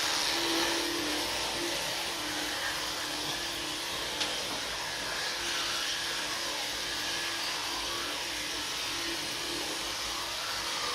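Electric toothbrush buzzing while teeth are brushed, its tone wavering as it moves in the mouth, over a steady rushing noise. A brief click about four seconds in.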